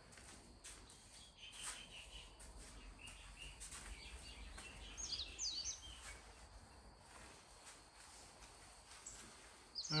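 Faint outdoor ambience with birds chirping in the background, a quick run of short high chirps about halfway through.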